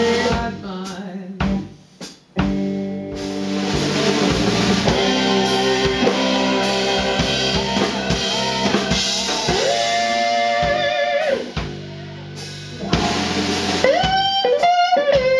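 A live blues band plays an instrumental passage between vocal lines: drum kit, bass, electric guitar and sustained keyboard chords. The band drops out briefly about two seconds in, comes back in full, eases off near the end and then picks up again.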